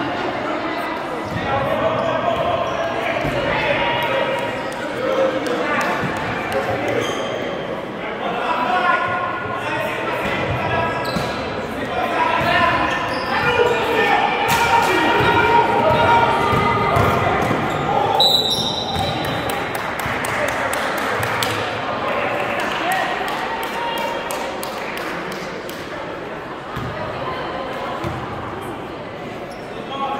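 Basketball bouncing on a gym floor during play, with a run of sharp knocks about two-thirds of the way in. Indistinct voices of players and spectators call out, echoing in the large gymnasium.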